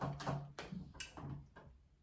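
A few faint clicks and light taps from handling a plastic pouch and cutlery at a table, the last about a second and a half in.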